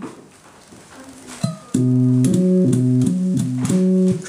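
Homemade two-string analog guitar synthesizer (a 'pipe synthesizer') playing a run of sustained, organ-like notes that switch abruptly from one pitch to the next, starting nearly two seconds in.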